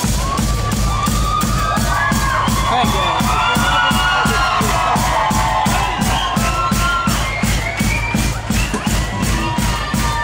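Rockabilly song with a fast, steady drum beat of about four beats a second, and a crowd cheering and shouting over it during the first several seconds.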